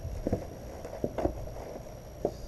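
Cardboard box and plastic packaging being handled, giving a few short knocks and rustles, two of them close together a little past a second in.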